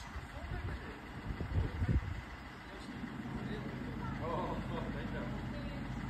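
Fire van's engine idling with a steady low rumble, with two short knocks about a second and a half and two seconds in, and faint voices in the background near the end.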